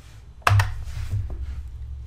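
A single sharp computer-keyboard keystroke about half a second in: the Enter key launching a typed command. A low steady hum runs underneath.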